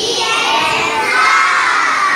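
A classroom of young girls shouting loudly together, many voices at once.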